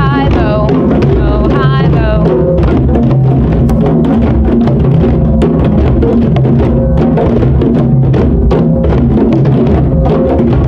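A class of children playing djembes together, many hand strikes on the drumheads blending into a loud, steady ensemble rhythm.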